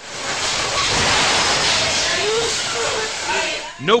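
Loud, steady hissing noise from a city bus's onboard camera microphone as a car collides with the front of the turning bus.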